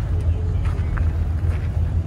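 Car engines idling, giving a steady low rumble.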